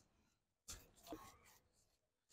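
Near silence, with two faint, brief sounds a little past the middle.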